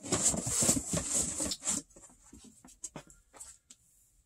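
Shrink-wrapped vinyl records being handled and pulled out of a cardboard shipping box: rustling and scraping for about two seconds, then a few light taps and clicks.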